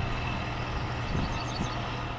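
Steady outdoor background noise with a constant low mechanical hum.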